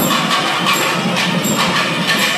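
Loud percussion music with a steady beat of drum strokes and metallic jingling.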